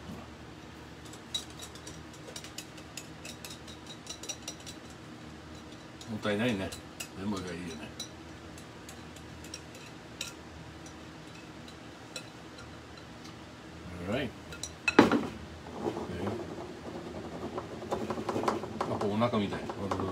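A metal utensil clinking and scraping against a glass mixing bowl as batter is scraped out into a frying pan, in quick light ticks early on and one sharp knock about three-quarters of the way through.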